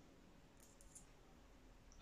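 Near silence: room tone, with a few faint small clicks about halfway through and one more near the end.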